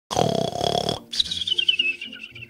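A cartoon character's exaggerated snore: a loud, rasping snort on the in-breath, followed by a wavering whistle that falls in pitch on the out-breath.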